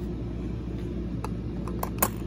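Steady low background hum with a few light clicks in the second half, the sharpest right at the end: coins and a plastic coin-sorting box being handled.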